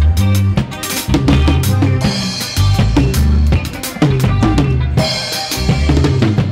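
Gospel-style drum kit played in a live band jam: kick drum, snare and cymbals in quick, busy patterns over held bass notes and keyboard chords.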